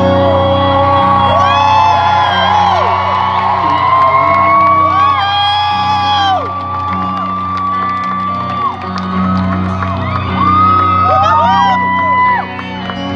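Live rock band playing an instrumental passage with acoustic guitar, heard from within the crowd, with fans whooping and cheering over the music.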